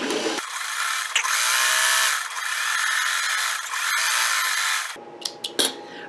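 Singer 401A sewing machine running at a steady speed, stitching a side seam. It eases off briefly about two seconds in and stops about five seconds in.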